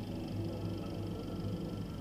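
Low, steady background hum, quiet and unchanging.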